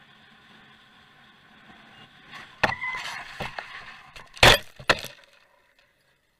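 Vehicle crash heard from the dashcam inside the recording vehicle: after a low cabin hum, a first hard impact comes about two and a half seconds in, followed by a run of crunching impacts. The loudest bangs come about four and a half and five seconds in, and then the sound cuts off suddenly.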